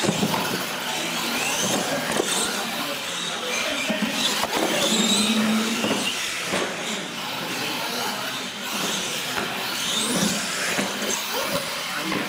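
Two radio-controlled monster trucks launching and racing down a concrete track, their motors and tyres running hard. The sound starts suddenly at the launch and carries on with wavering high-pitched tones over a steady noise.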